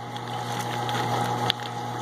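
Steady hum of running machinery, with a single sharp click about one and a half seconds in.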